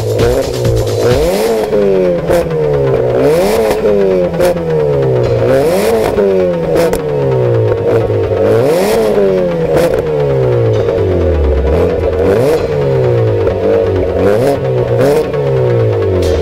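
Tuned Peugeot 206 CC's engine revved over and over while the car stands still, heard from behind at exhaust level. The pitch rises and falls about every two seconds.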